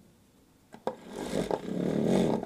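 A mini vortex mixer switched on by pressing a paint bottle down onto its cup. A couple of light clicks come as the bottle seats, then about a second in the motor starts and the bottle shakes on the spinning cup, the sound building up toward the end.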